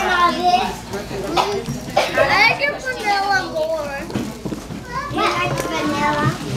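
Several young children's high-pitched voices chattering and calling out over one another, with no clear words.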